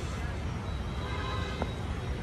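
A faint distant voice about halfway through, over a steady low rumble, with a single click near the end.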